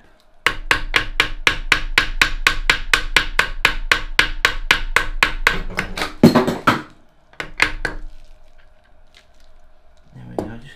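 Hammer, likely copper-faced, tapping on a crankshaft bearing cover of a stripped Reliant 750cc engine block to work it free. The taps are light, rapid and even, about five a second for some six seconds, then there is one harder blow and, after a short pause, two more taps.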